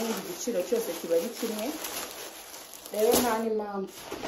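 A woman talking, then a louder drawn-out vocal sound near the end.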